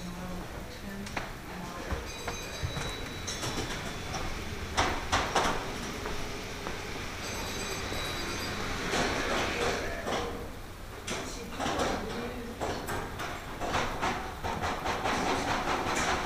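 Model trains running on a layout track, with an uneven clatter of clicks from the moving trains.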